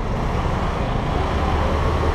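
Car moving slowly through town traffic: a steady low rumble of engine and road noise.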